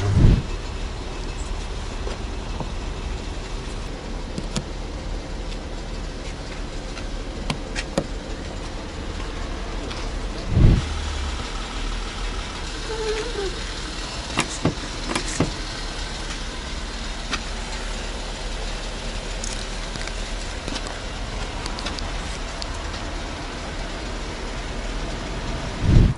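Steady running noise of a car at close range, with a few light clicks of handling. About ten seconds in there is one heavy, low thump of a car door shutting.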